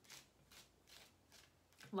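A tarot deck being shuffled by hand: four soft, faint card rustles about half a second apart.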